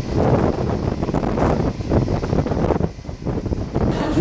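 Loud, gusty wind buffeting a handheld camera's microphone on the open deck of a ferry at sea.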